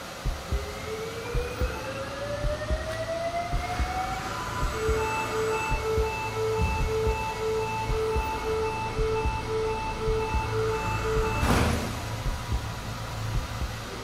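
A defibrillator charging for an electrical cardioversion: a rising whine, then a steady ready beep about twice a second. The beeping ends with a brief sharp burst of noise about three-quarters of the way through, as the shock is delivered. Under it all runs a low rumble with scattered clicks.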